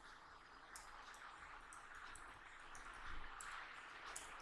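Faint computer keyboard typing: scattered soft key clicks at an irregular pace over low room hiss.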